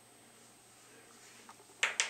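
Quiet room with a faint tick about one and a half seconds in, then two sharp clicks close together near the end.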